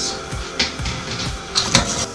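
Background music: an electronic dance music loop playing steadily at a moderate level.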